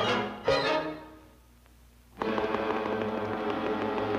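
Orchestral cartoon score: two loud accented hits about half a second apart, each dying away, then a second of near silence, before the orchestra comes back in with a steady sustained passage led by strings.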